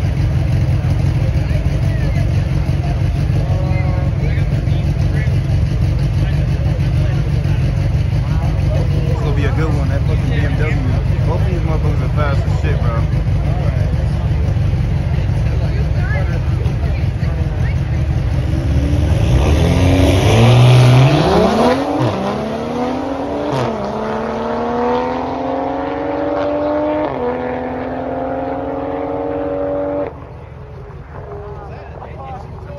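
Two stock BMWs, an M340i and an X3M, both with turbocharged straight-six engines, holding at the start line with a steady low rumble. About two-thirds of the way in they launch at their loudest, and the engine notes climb in pitch through the gears, dipping at each upshift, as they pull away and fade.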